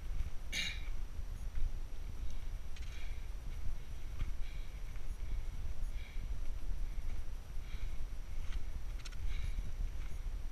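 A hiker's footsteps crunching on rock and grit at an uneven walking pace, over a steady low wind rumble on the microphone. A single sharper click comes about half a second in.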